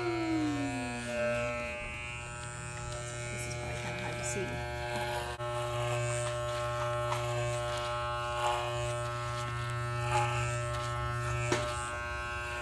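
Wahl electric hair clippers buzzing in a steady hum as they trim up the back of a little boy's neckline.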